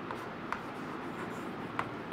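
Chalk writing on a blackboard, with two sharp chalk taps, about half a second in and near the end, over steady background noise.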